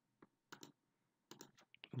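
Faint clicks of a computer mouse and keyboard: several short, separate clicks spread over two seconds.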